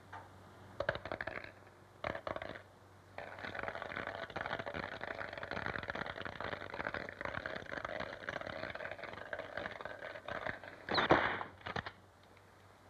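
Dice rattling in a gambling cup: two short shakes, then a long continuous rattle, ending with a loud clack at about eleven seconds, as of the cup coming down on the mat.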